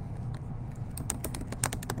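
Typing on a computer keyboard: a quick run of about eight keystrokes in the second half, over a low steady hum.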